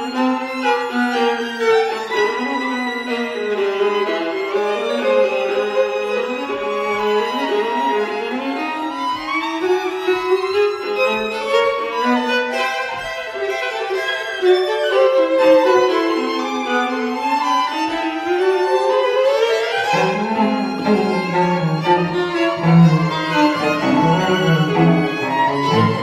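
String quartet playing, several bowed lines moving against one another in the middle and upper range, with a lower line coming in about twenty seconds in.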